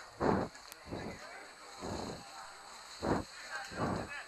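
Several short shouts carrying across an open football pitch, about a second apart, the first the loudest.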